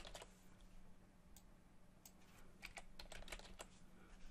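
Faint computer keyboard typing: a scattering of single keystrokes, more frequent in the second half, as a short word is typed in.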